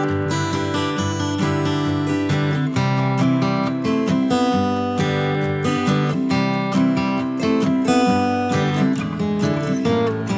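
Background music of a strummed acoustic guitar playing chords.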